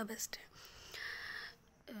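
A woman's soft, breathy speech trailing off, then a hissing sound lasting about a second, like a drawn-out breath or 'shh', before she speaks again near the end.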